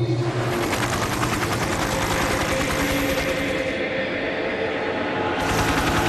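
Rapid fluttering rattle of a night-flying insect's wings, easing about two thirds of the way through and flaring again near the end.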